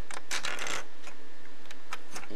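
Plastic LEGO bricks clicking and scraping under a finger as a rock piece is pushed off its studs to free a minifigure: a click at the start, a short rattle of clicks about half a second in, and one more click near the end.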